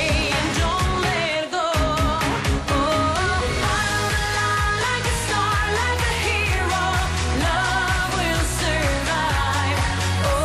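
A woman singing a dance-pop song live into a microphone over a backing track with a steady beat and bass; the bass drops out briefly about a second and a half in.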